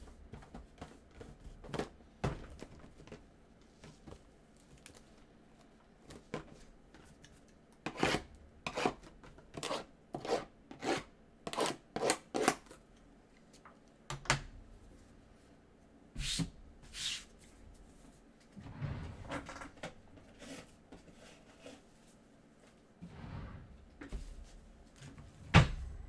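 Shrink-wrapped cardboard hobby boxes being handled and set into place on a stand: scattered light knocks and taps, a quick run of them in the middle, with some soft rustling later on.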